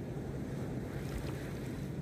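Steady outdoor seashore ambience: wind rumbling on the microphone over the wash of surf, with no distinct events.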